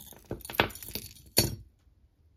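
Metal costume jewelry clinking as it is handled: chains and charms knocking together in a quick run of small clicks, then one sharper clink about a second and a half in.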